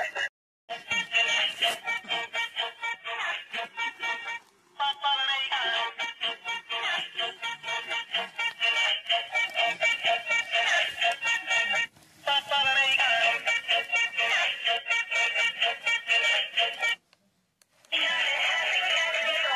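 Dancing cactus toy playing an electronic song with singing and a quick beat through its tiny speaker, thin and without bass. The song cuts out briefly a few times.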